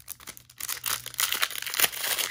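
Foil wrapper of a 1997 Topps baseball card pack being torn open and crinkled in the hands: a run of irregular crackles and rips that gets busier about halfway through.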